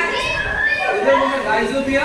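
Speech: a man talking steadily, lecturing.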